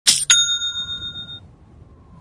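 Logo-intro sound effect: two quick metallic strikes about a quarter-second apart, then a bright bell-like ring that fades out over about a second.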